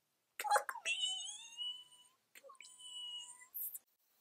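A woman's high-pitched whining wail, two held cries of about a second each with a short break between, then a quick "shh" hiss as she shushes.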